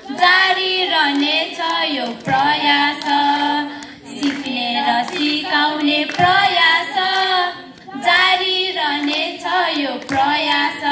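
A group of children singing together, in phrases about two seconds long with short breaks between them.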